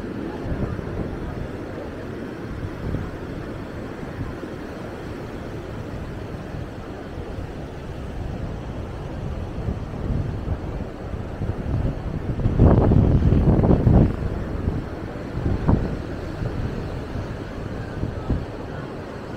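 Ocean surf washing on a sandy beach, mixed with wind buffeting the microphone as a steady low rumble. The wind rumble swells louder for a stretch a little past two-thirds of the way through and once more briefly after that.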